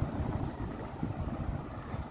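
Low rumbling outdoor background noise on a street, with a faint steady high-pitched tone above it.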